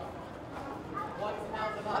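Voices of people talking in the background over steady outdoor ambience.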